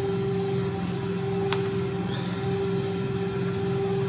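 A steady low hum made of several held tones, with one faint click about one and a half seconds in.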